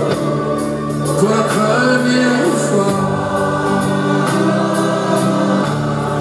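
Live song: a male lead singer and a choir singing together over a band with electric guitar, held notes gliding between pitches.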